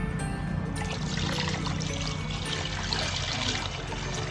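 Water pouring in a stream into a plastic basin of water, splashing over a whole chicken being rinsed, starting about a second in, over background music.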